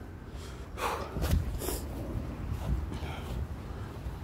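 A man breathing hard: a series of sharp, noisy breaths in and out, most of them in the first two seconds and a few more near the end. He is out of breath from running laps.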